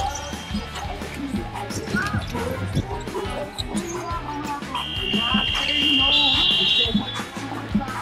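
Basketball dribbled on a wooden court amid arena music and voices. A little past halfway, a high, steady electronic buzzer sounds for about two seconds, with a second, higher tone joining near its end, as play is stopped.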